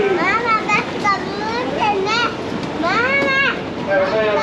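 High-pitched voices of small children talking and calling out close by, in several short rising and falling calls, over steady background noise.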